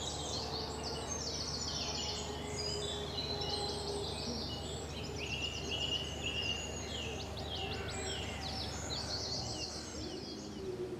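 Dawn chorus of many songbirds singing at once, with overlapping rapid trills, chirps and whistled phrases throughout, over a low steady rumble.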